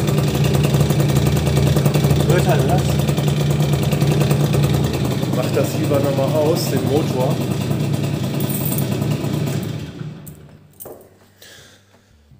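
Peugeot Kisbee scooter engine idling steadily with something rattling, then switched off about ten seconds in, after which it goes nearly quiet.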